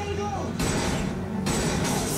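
A TV show's action-scene soundtrack: a brief line of dialogue, then a rumbling stretch, and a loud burst with clinking near the end as gunfire strikes a car's windshield.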